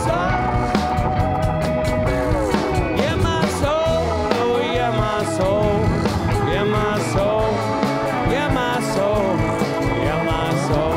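A live band plays an instrumental passage on acoustic and electric guitars, drum kit and washboard. A lead line bends up and down in pitch over a steady drum beat.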